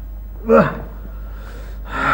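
A man's short voiced sigh, falling in pitch, as he drops heavily onto a sofa, followed near the end by a breathy exhalation.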